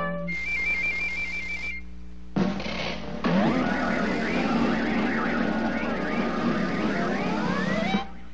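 Cartoon soundtrack: a warbling high trill for about a second and a half, then a sudden rushing hiss with gliding music tones over it.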